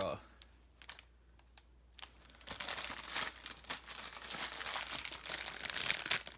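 Clear plastic packaging crinkling as a novelty straw is handled in its bag: a few faint clicks at first, then steady crinkling from about halfway through.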